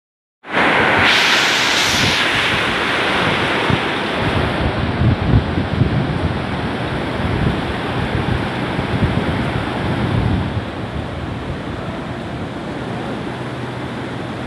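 Hail and heavy rain pelting down in a dense, steady hiss during a hailstorm, with gusts of wind buffeting the microphone. It eases slightly about ten seconds in.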